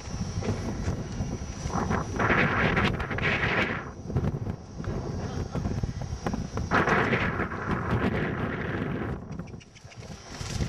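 Strong gale buffeting the microphone with a steady rumble, swelling into two louder rushing gusts, one about two seconds in and another about seven seconds in.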